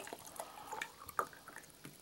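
Seawater poured from a bottle into a small measuring cup, a faint trickle with scattered drips and light ticks.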